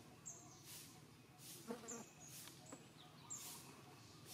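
Faint outdoor ambience: small birds give short, high, falling chirps about four times. Under them, soft insect buzzing swells and fades at irregular intervals.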